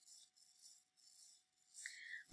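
Near silence: faint room tone in a pause between spoken sentences.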